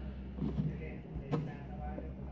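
Low steady room hum with a soft murmur about half a second in and one short, sharp click a little past halfway, from spoons scooping a kiwano melon.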